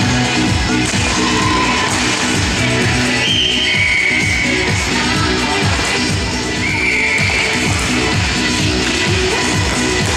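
Background pop music with a steady beat, laid over the footage.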